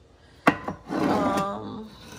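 A glass mason jar set down on a wooden cabinet shelf with one sharp knock, then a few lighter clicks as jars and spice containers on the shelf are moved. A short voiced hum follows in the middle.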